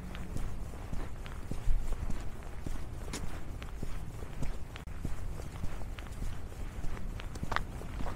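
Footsteps of a person walking on a paved path with snow and grit on it: irregular short crunching steps over a steady low rumble.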